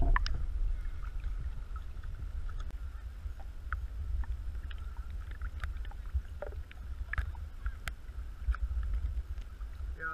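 Small waves lapping and sloshing around an action camera held at the water's surface, heard through its waterproof housing as a steady muffled low rumble with scattered small clicks and splashes of water.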